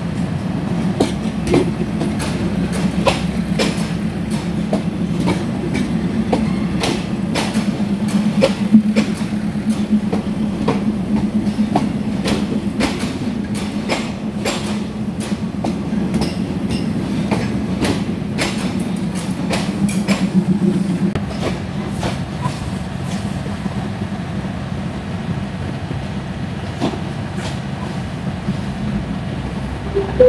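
Diesel passenger train rolling along a station platform: wheels clicking and knocking irregularly over the rail joints above a steady low hum. The clicks thin out and the hum eases after about twenty seconds as the coaches pass.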